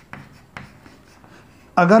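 Chalk writing on a chalkboard: faint scratching with two sharper taps in the first second as a word is written.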